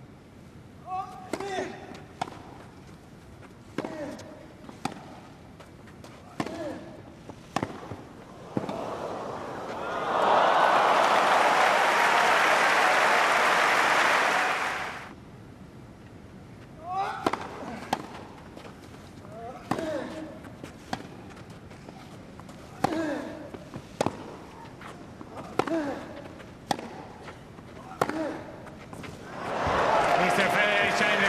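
Two tennis rallies on a grass court: a series of sharp racket-on-ball strikes, many with a short grunt from the hitting player. About ten seconds in, crowd applause rises for some five seconds, then the ball strikes and grunts of a second rally follow.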